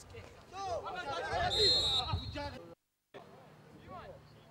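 Players shouting on the pitch, with a referee's whistle blown once, briefly, about one and a half seconds in, stopping play for a foul. The sound cuts out completely for a split second near the end.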